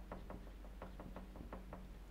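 Faint taps and ticks of a marker pen writing on a whiteboard, a quick, uneven run of small clicks over a low room hum.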